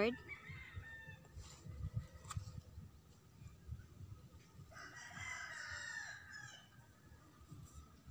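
A bird calls once in the background for about two seconds, starting about five seconds in, with fainter calls near the start. A low rumble runs under it.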